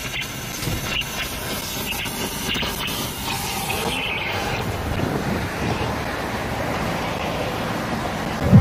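Steady traffic noise at a street intersection, with cars passing. A few light clicks come in the first couple of seconds.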